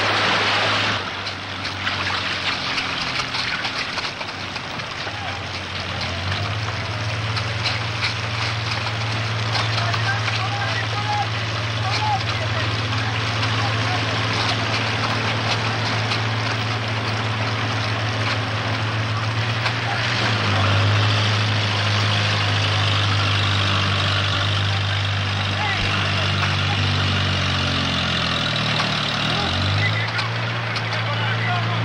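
A heavy engine running steadily, its pitch shifting a little about twenty seconds in and bending again near the end, over a steady hiss of noise.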